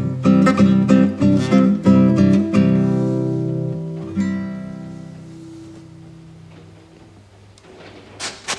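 Acoustic guitar strumming the closing chords of a folk song, then a final chord left to ring and die away.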